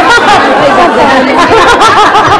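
A crowd of voices talking and calling out over one another, with a rapidly warbling high voice near the end.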